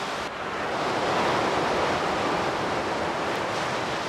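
Sea surf washing onto the shore: a steady rush of waves that swells a little under a second in.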